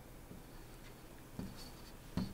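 Faint stylus writing on a digital writing surface: quiet scratching, with a small tap and a thin high squeak about one and a half seconds in.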